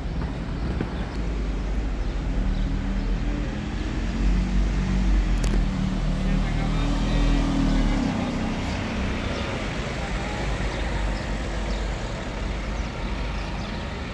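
Castrosua New City city bus pulling past: a low engine rumble with a steady hum that builds as it approaches, is loudest about four to eight seconds in, then eases off as it drives away, over general street traffic.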